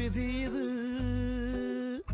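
A voice humming one long, nearly level note that cuts off suddenly at the end.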